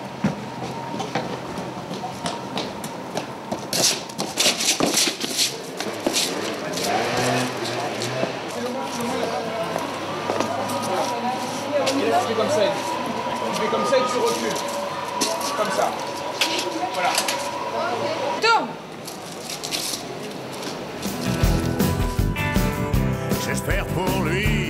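Indistinct voices and scattered knocks and clicks of a film set. About three seconds before the end, a rock-and-roll song played by a full band starts.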